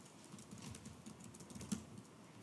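Faint typing on a computer keyboard: a quick run of key clicks as a password is entered at a terminal prompt.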